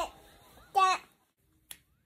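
A toddler's voice: two short high-pitched wordless vocal sounds, the second just before a second in. Near the end come two sharp clicks, about half a second apart.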